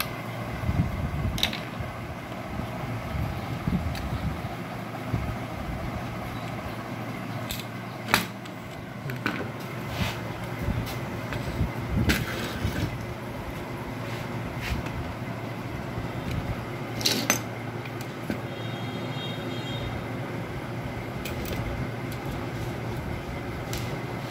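Scattered clicks and light knocks of a screwdriver against the plastic and metal parts of a copier fuser unit as it is taken apart, over a steady low background hum.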